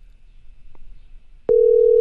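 Faint room noise, then about one and a half seconds in a telephone ringback tone starts: a steady tone showing that the outgoing call is ringing at the other end.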